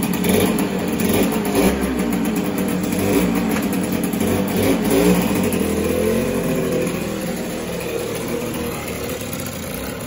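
Yamaha DT80MX's small two-stroke single-cylinder engine running continuously, its revs rising and falling as the bike is ridden slowly. The bike is newly back on the road after many years laid up.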